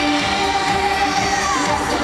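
Loud live pop dance music from a concert sound system, recorded from among the audience, with the crowd shouting and cheering over it.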